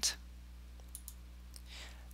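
A couple of faint computer mouse clicks about a second in, over a steady low electrical hum, with a soft breath near the end.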